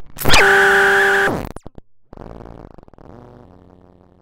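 TestBedSynth software synthesizer playing two notes. The first is loud: its pitch drops sharply at the attack, then it holds steady for about a second and cuts off. The second is quieter and lower, with a buzzy texture, and fades out near the end.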